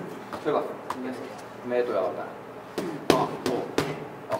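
Boxing gloves striking hand-held pads: a quick run of about four sharp smacks in the last second or so, the second one the loudest.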